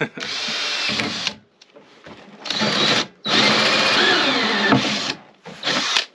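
Cordless drill cutting a hole through the wall of a plastic container. It runs in four spells, the longest nearly two seconds, with short pauses between them.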